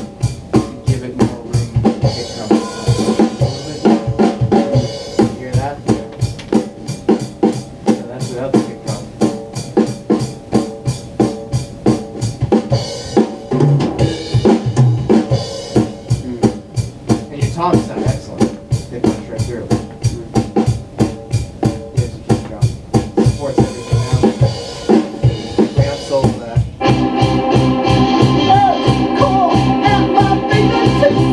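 Multitrack drum recording played back over studio monitors: kick, snare and cymbals keeping a steady beat, auditioned with the overheads and drum mix high-passed at about 100 Hz to clear out the mud. Near the end the rest of the band's instruments come in over the drums.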